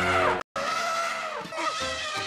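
Hollywoodedge elephant trumpeting sound effect (PE024801). It is a shrill trumpet call that drops in pitch and cuts off about half a second in. After a brief silence a second trumpet call starts, sliding down in pitch near the middle.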